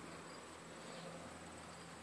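Quiet outdoor background: a faint hiss with a thin, steady high-pitched tone running through it, of the kind insects such as crickets make.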